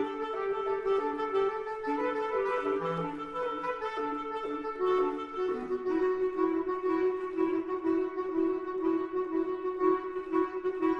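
Two bass clarinets playing a contemporary duet, sustained notes overlapping in the middle register. In the second half one part repeats a note in an even pulse beneath a held higher tone.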